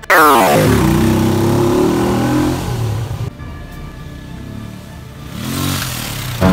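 Small single-cylinder motorcycle engine running and revving, starting with a sudden loud, fast falling sweep and rising again in pitch near the end.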